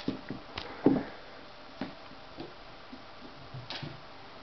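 Scattered light knocks and taps, the loudest about a second in, from a kitten scampering after a thrown toy on the stairs.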